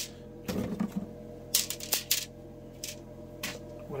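Mesh drying trays of a food dehydrator being slid out and handled: a series of light clatters and clicks spaced about half a second to a second apart, over a steady low hum.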